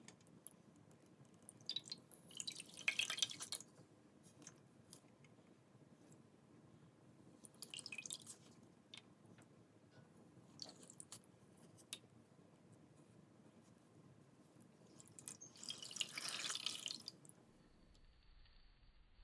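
A block of floral foam squeezed and crushed between fingers, crunching in four short bursts of crisp crackling with single small clicks between; the first and last bursts are the loudest.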